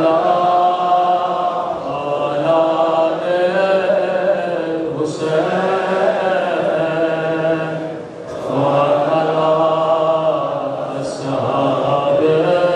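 A man's voice chanting a slow, melodic lament into a microphone, holding long wavering notes, with a short breath pause about eight seconds in.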